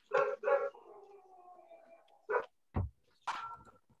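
A dog barking twice, then giving one long whine, followed by a few shorter yelps, picked up through a participant's microphone on the video call.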